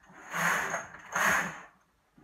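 Knitting machine carriage pushed across the needle bed twice, knitting two rows: two rushing slides about a second apart, each lasting about half a second.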